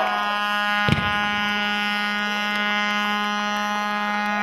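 A steady buzzing tone, held at one pitch for more than four seconds like a horn or buzzer, with a single sharp knock about a second in.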